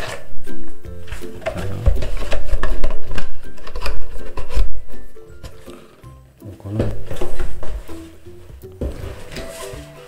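Background music, over rustling and knocking of a cardboard box and plastic-wrapped parts being unpacked by hand.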